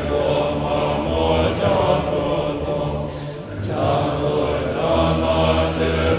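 Tibetan Buddhist monks chanting a liturgy together in low, sustained voices, picked up through a microphone, with a brief lull for breath about three and a half seconds in.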